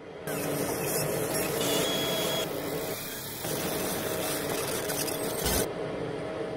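Steady machine-like noise with a low hum, starting just after the opening, dipping briefly in the middle and ending with a short low thump near the end.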